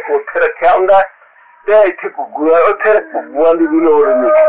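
A man talking, with a short pause about a second in before he goes on.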